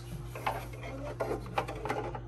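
A plastic toy house being handled and turned over. Plastic parts rub and scrape, with a few light clicks and knocks from about half a second in.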